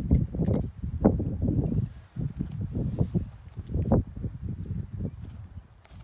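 Wind buffeting the microphone outdoors: irregular low rumbling gusts that rise and fall, with a few sharper knocks mixed in.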